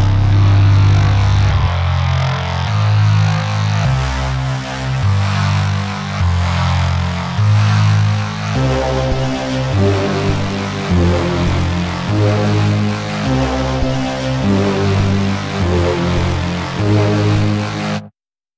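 Instrumental music built on a deep, loud bass line; higher melodic notes join about halfway through, and the music cuts off suddenly at the very end.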